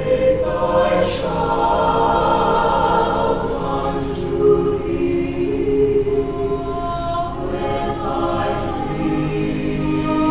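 Mixed choir of about twenty high-school voices singing sustained chords. The sound swells in loudly right at the start, and the chords shift every second or two.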